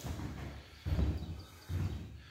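Two dull, low thumps, one about a second in and a shorter one near the end: footsteps on the floor as someone walks into the kitchen, over faint background noise.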